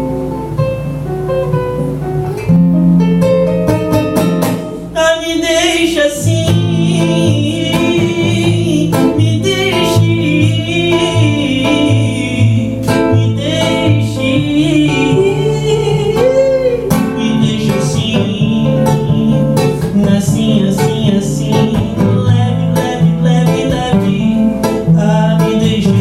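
A man singing live to his own acoustic guitar, which is strummed and picked. The playing grows louder a couple of seconds in, and the sung melody rises over the chords from about six seconds in.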